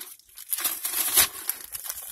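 Paper burger wrapper crinkling and rustling while the burger is handled and put together.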